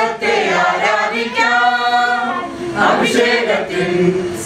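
A small group of mostly women's voices singing a Malayalam Christian hymn without accompaniment, with one note held for about a second midway.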